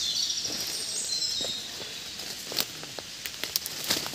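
Footsteps and brushing through forest undergrowth and leaf litter, with scattered soft crackles that grow more frequent near the end. A high, thin birdsong trills during the first second or so and then fades.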